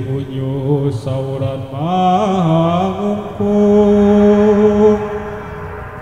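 A single voice singing a slow, gliding vocal line in Javanese gamelan style, with a long held note past the middle and quieter in the last second.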